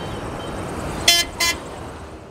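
Steady street traffic noise, broken about a second in by two short, high-pitched vehicle horn toots in quick succession.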